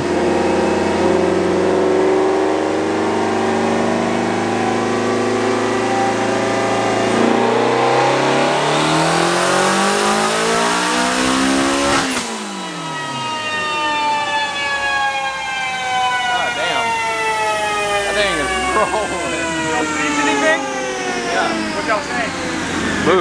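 Twin-turbocharged Ford Shelby GT350's 5.2-litre flat-plane-crank V8 making a full-throttle dyno pull at about 12 pounds of boost. The pitch climbs steadily for about twelve seconds, then the throttle closes and the revs fall away as the rollers coast down. The pull sounded "way nasty".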